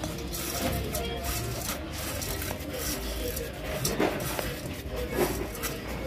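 A hand stirring and rubbing dried small silver fish in an aluminium pot: a dry, rustling scrape broken by many short crackles.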